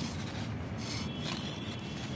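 Metal gardening tool scraping through the potting soil around the inside of a plant pot, loosening the soil: a continuous, quiet scratching and rubbing.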